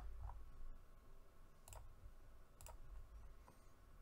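A few faint computer mouse clicks, spaced about a second apart, over a quiet room hum.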